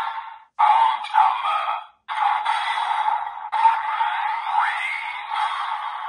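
Desire Driver toy belt's small built-in speaker calling "Armed Hammer" with electronic transformation sound effects as the Hammer Raise Buckle is activated. The sound is tinny and comes in several bursts with short breaks, with sweeping pitch glides in the effects.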